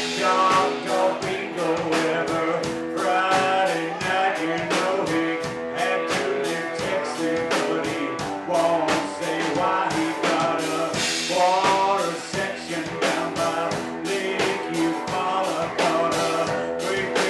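Live rock band playing a driving, steady groove on drums, electric guitar and acoustic guitar.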